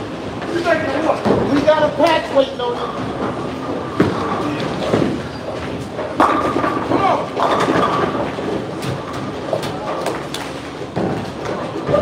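Bowling alley din: background voices, bowling balls rolling down the lanes and pins clattering, with a sharp knock about four seconds in.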